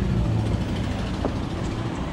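A vehicle engine idling as a steady low hum, easing a little after about a second, with a faint click just past the one-second mark.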